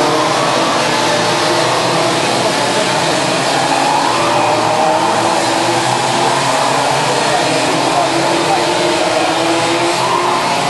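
Several 125 cc two-stroke Rotax Junior Max kart engines racing at once, heard from across the circuit. Their overlapping notes rise and fall in pitch as the karts accelerate out of corners and back off into them.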